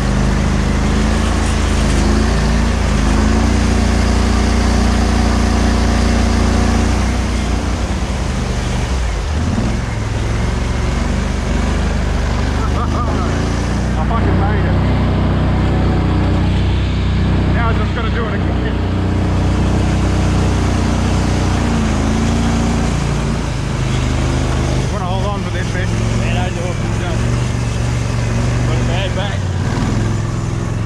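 Argo all-terrain vehicle's engine running under load as it drives through mud, its note shifting in pitch a few times as the throttle changes.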